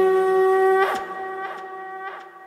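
A conch shell (shankha) blown in one long, steady note that fades out about a second in, with a few brief accents after it.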